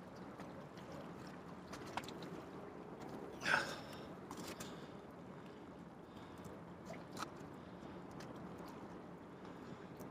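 Faint handling of a wire-ring crab trap and its netting while a crab is taken out: a few light clicks and a brief louder rustle about three and a half seconds in, over a low steady wash of shallow water.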